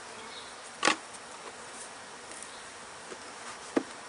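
Honey bees buzzing steadily around open hives. There is a sharp knock about a second in and a lighter one near the end as a brick and a hive's top cover are moved.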